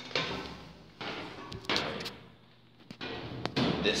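Footsteps thudding on the treads of a steep metal ship's ladder as someone climbs down, several thuds about a second apart.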